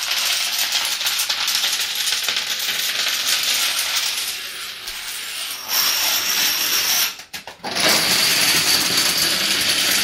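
Plastic toy dominoes toppling in a long chain run, a dense continuous clatter of small tiles knocking into one another. The clatter eases about four seconds in, breaks off briefly just past seven seconds, then comes back louder as the domino wall comes down.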